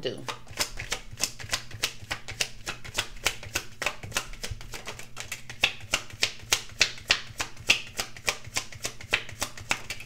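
A deck of tarot cards being shuffled by hand: a quick, even run of card slaps, about five a second, with a few louder ones in the second half.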